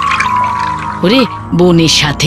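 Water pouring from a clay pot onto plants over background music, with a woman's voice starting about a second in.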